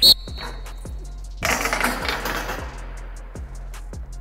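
A player's hands strike a one-man blocking sled: a sharp hit whose metal frame rings for about a second. About a second and a half in, there follows a second or so of scraping as the sled is driven across artificial turf.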